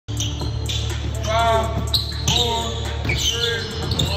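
Basketball shoes squeaking on a hardwood gym floor in a few short, high squeals as two players jostle in the post, with a basketball bouncing now and then over a low hum in the hall.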